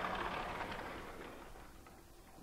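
A vertically sliding lecture-hall whiteboard panel being moved down in its frame: a steady sliding noise that fades away about halfway through.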